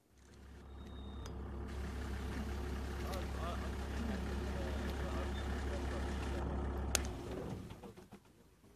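Safari vehicle's engine idling with a steady low hum, stopping about seven seconds in just after a sharp click.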